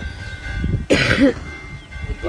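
A person coughing once, a single harsh burst about a second in.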